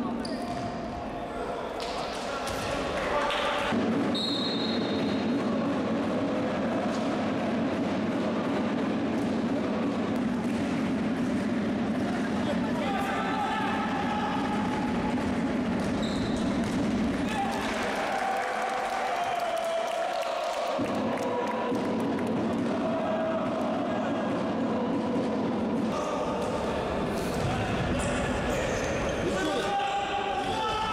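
A futsal game in a sports hall: the ball being kicked and bouncing on the hard floor, with players' shouts, all echoing in the hall.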